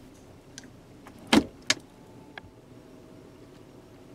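A few light mechanical clicks and knocks from the 2017 Nissan Murano's console gear shifter being handled, the loudest about a second and a half in.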